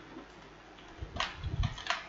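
Computer keyboard being typed on: a quiet first second, then a quick run of several key clicks in the second half.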